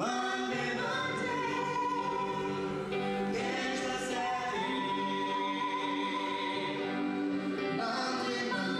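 Pop singers singing into handheld microphones, with long held notes over musical accompaniment.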